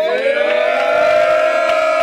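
One long, high, siren-like wail that rises slightly at the start and then holds a single steady pitch.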